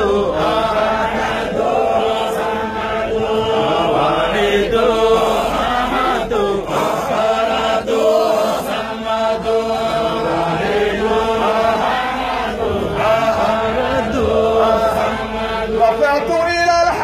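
A group of men chanting a Sufi devotional hymn together in Arabic, one drawn-out melodic line after another.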